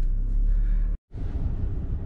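Steady low rumble inside a car cabin, broken by a brief gap of dead silence just before a second in.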